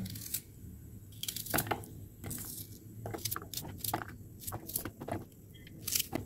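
White onion being broken into pieces and dropped into the clear plastic bowl of a hand-pull vegetable chopper: irregular crackles, tearing of layers and light knocks on the plastic, in small clusters.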